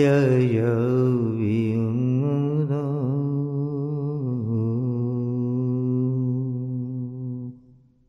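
A man's voice chanting a dhikr invocation as one long held note, wavering a little at first and then steady, breaking off about seven and a half seconds in.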